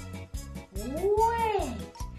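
A single cat meow, rising and then falling in pitch, over background music with a steady beat.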